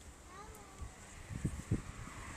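An alpaca's soft, high, gliding hum, faint. A few dull knocks come from the phone being handled against the fence rail near the end.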